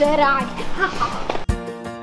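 A voice talking, cut off abruptly about one and a half seconds in by background music with held notes and a steady low beat.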